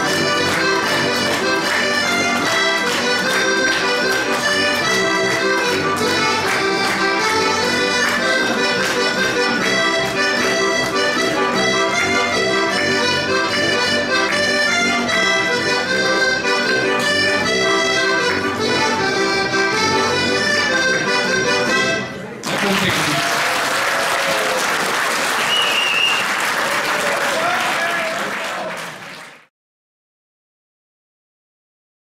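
Heligonka, a Slovak diatonic button accordion, playing a folk tune in steady full chords; the tune stops about three-quarters of the way through. Audience applause follows and fades out near the end.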